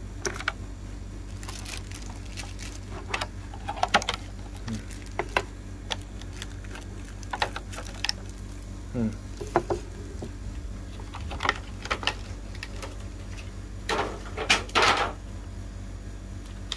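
Clear plastic packaging being handled: scattered crinkles, clicks and rustles of a plastic blister tray and plastic bags, with a louder rustle about 14 seconds in.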